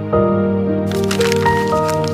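Calm background music of held, gently changing notes. About a second in, a burst of crackling noise joins it for a little over a second.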